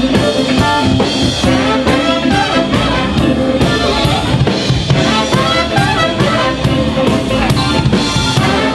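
Live band playing with a horn section of trumpet, trombone and saxophone over a drum kit and electric bass, loud and steady with a regular drum beat.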